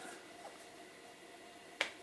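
Quiet room tone in a pause between words, broken near the end by a single sharp click.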